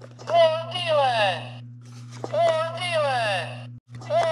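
A promotional "We're Dealin'!" talking push button playing its recorded voice clip twice through its small speaker, the voice swooping down in pitch. Under it runs a steady electrical hum from the button's speaker, which cuts out for a moment near the end.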